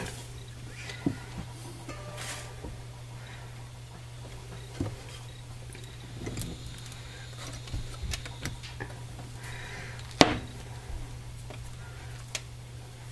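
Quiet handling of hard castile soap at a wooden wire soap cutter: a scatter of soft knocks and scrapes as the loaf is pushed against the wire and cut bars are picked up, with one sharper knock about ten seconds in, over a steady low hum.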